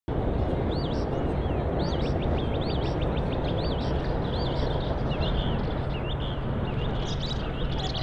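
Birds chirping in repeated quick looping notes over a steady background of outdoor noise with a constant low hum.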